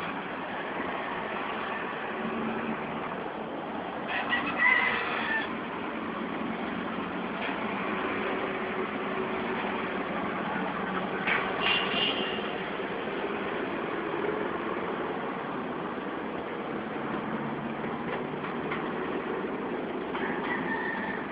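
A rooster crowing, a loud crow about four seconds in and a shorter one around eleven seconds, over a steady background of distant road traffic.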